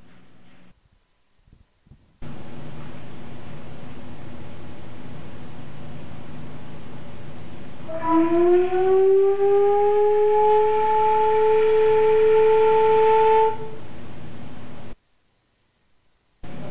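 A wooden organ pipe blown with helium sounds a clear note that glides upward in pitch and then holds steady for several seconds before cutting off. The rising pitch is the sign of helium replacing the air in the pipe. A steady hiss runs underneath.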